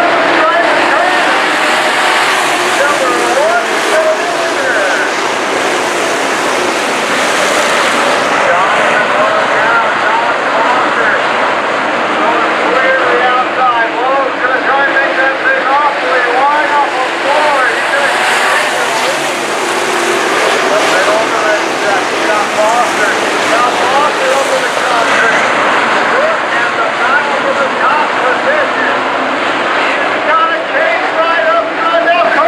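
A pack of dirt-track Sport Modified race cars running at speed, with many engines overlapping, each rising and falling in pitch as the cars throttle through the turns. The sound is loud and continuous.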